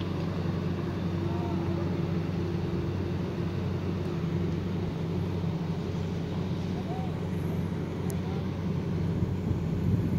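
Steady low hum of an idling engine, with faint distant voices now and then.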